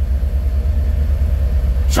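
Steady low rumble of a car's engine and road noise heard inside the cabin, with a faint steady hum above it.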